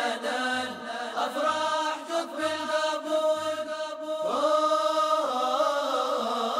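A cappella vocal music: a group of voices sings long, held, ornamented notes, rising into a new sustained note about four seconds in, with a low beat about once a second beneath.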